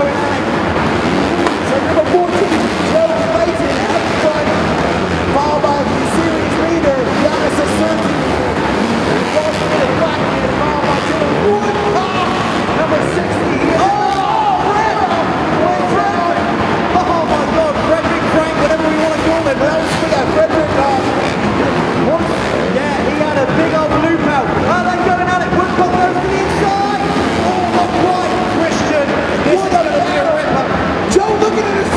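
Several racing dirt bike engines revving hard round an indoor arena track, their engine notes rising and falling continuously as riders accelerate and back off, with speech mixed in over the top.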